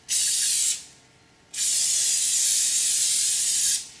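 Aerosol can of non-stick cooking spray hissing in two bursts as it greases silicone cupcake cases: a short spray at the start, then a longer one of about two seconds from about one and a half seconds in.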